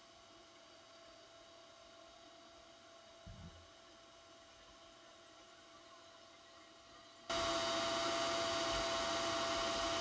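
A faint steady electrical hum, then about seven seconds in a louder steady hiss with hum switches on suddenly and keeps running.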